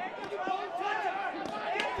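Crowd voices and shouts around a boxing ring, with a few sharp smacks of punches landing during a close exchange.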